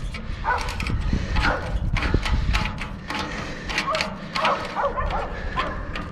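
A dog barking in a series of short barks, with scattered clicks and scrapes from a metal chimney cap being handled.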